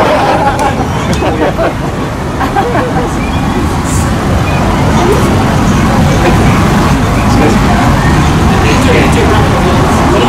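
Busy city street noise: a steady low traffic rumble with people's voices talking indistinctly.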